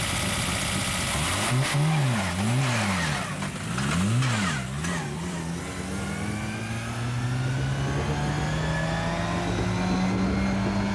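Lada 2101's inline four-cylinder engine revving hard as the car launches from a rally start. The note rises and falls sharply three or four times, then settles into a steady, slowly rising pull as the car drives away.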